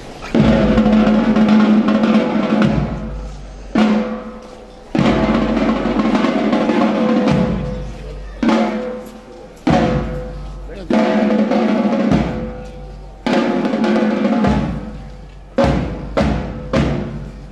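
A band playing a slow, solemn march, with snare drum rolls and bass drum strokes under held chords. Each chord starts abruptly and fades away, about eight times.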